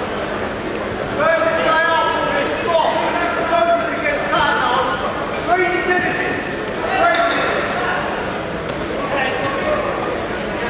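Men shouting from the side of the mat in a large hall, several voices in loud bursts that start about a second in, the words not clear.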